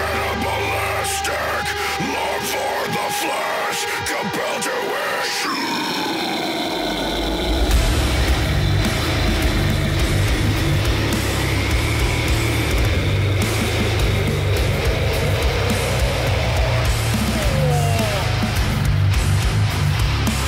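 Deathcore track playing. A lighter, pitched opening gives way to a falling sweep about six seconds in. About seven and a half seconds in, heavy drums, down-tuned guitars and harsh screamed vocals come in at full weight.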